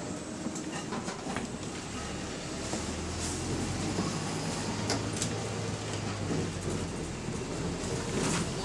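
A moving double-decker bus heard from inside: a steady low running hum, stronger from about two and a half seconds in, under road noise and scattered rattles and clicks from the body and fittings.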